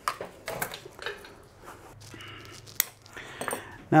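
Coil of aluminum bonsai wire being handled and pulled off: light metallic clinks and rustling, with a few scattered clicks and one sharper click a little before the end.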